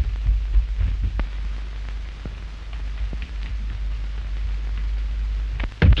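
Surface noise of an early-1930s film soundtrack: a steady low hum and hiss with scattered faint crackles, and one sharp thump just before the end.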